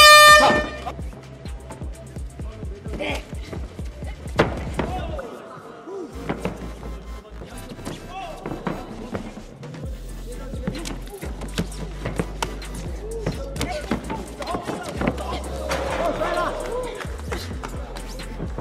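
A loud air horn sounds once in the first second, the signal ending the round in an MMA bout. It is followed by background music with arena noise and scattered shouts.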